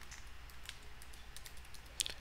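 Faint typing on a computer keyboard: a quick run of light key clicks.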